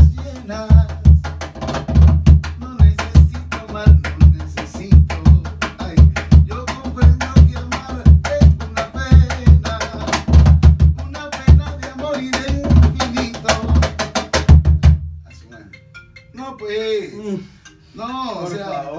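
Peruvian cajón played by hand in a fast, steady groove of deep bass strokes and sharp slaps. The playing stops about three seconds before the end.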